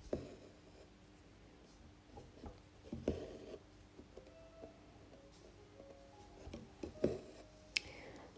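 Faint stitching sounds: a few sharp taps spaced a few seconds apart as an embroidery needle is pushed through taut fabric in a wooden hoop, with soft rustling of the thread being drawn through.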